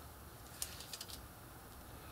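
A quick cluster of faint, scratchy ticks about half a second in, from a pen marking a line on chipboard against a clear plastic ruler on a cutting mat.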